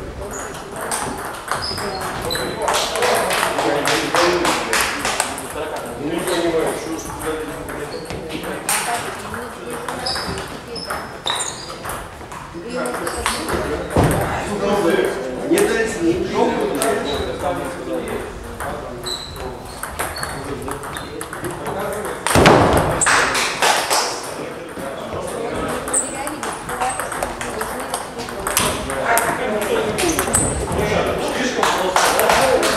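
Table tennis rallies: a ball clicking off bats and bouncing on the table again and again, each hit with a short high ping, in a reverberant hall. One louder burst of noise comes about three-quarters of the way through.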